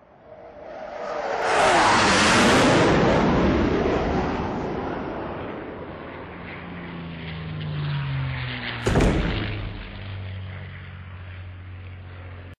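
Intro sound effect for an animated channel logo: a whoosh swells to its loudest about two seconds in and fades away with falling pitch, like something flying past. About nine seconds in comes a sudden hit, followed by a low steady hum.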